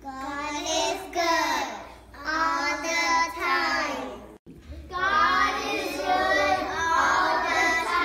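Child's voice singing without accompaniment, in three long phrases with short breaks between them.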